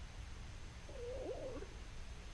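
A faint animal call, wavering and bending in pitch, lasting just under a second about a second in, over a steady low background hum.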